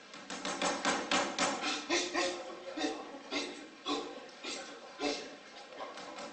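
A rapid run of sharp knocks, about eight a second for roughly the first two seconds, then a few scattered knocks, mixed with grunting voices.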